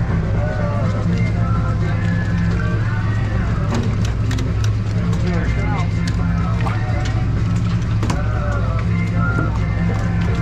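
Steady low drone of the sportfishing boat's engines, with voices in the background and scattered sharp clicks.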